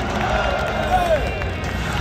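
Football stadium crowd voices and cheering over public-address music during player introductions, with a drawn-out voice rising and falling about a second in.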